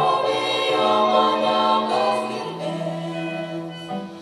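Women's vocal ensemble singing in harmony, several voices holding long notes together and moving to new chords, with a low voice changing pitch about two and a half seconds in.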